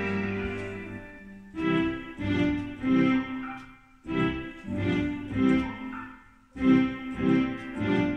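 A Yamaha Electone electronic organ played with both hands by a child: a held chord dies away over the first second and a half, then a simple melody over accompaniment comes in short phrases, with brief breaks about four and six and a half seconds in.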